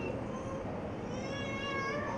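A faint, high-pitched wavering call in the second half, like an animal's call, over low room noise.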